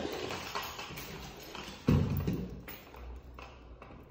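Light taps, roughly one a second, of footsteps on a hardwood floor, with a dull thump about two seconds in.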